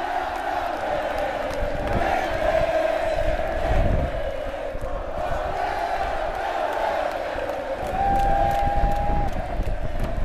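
A large rock-concert crowd chanting and cheering, heard from within the audience. Near the end, a single steady high note is held for about a second above the crowd.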